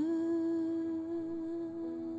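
A woman's voice holding one long, steady sung note, sliding up into it at the start; a fainter lower note joins near the end.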